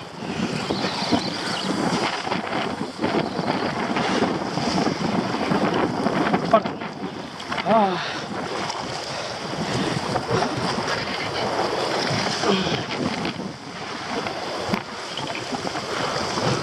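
Wind buffeting the microphone over waves washing against sea rocks, a steady loud rush. A few short voice sounds rise and fall in pitch about halfway through and again a few seconds later.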